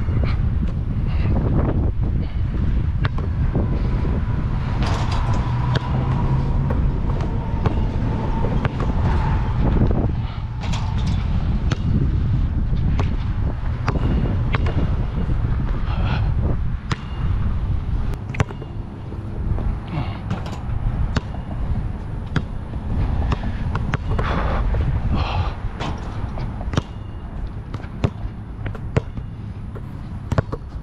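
Wind buffeting the microphone in a steady low rumble, with scattered sharp knocks of a Voit Super Dunk basketball bouncing on a hard outdoor court.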